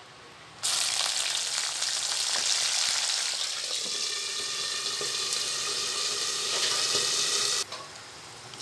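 Hot oil in a kadai sizzling as manathakkali berries fry with dried red chillies. It is a steady, dense sizzle that starts suddenly about half a second in and stops abruptly about a second before the end.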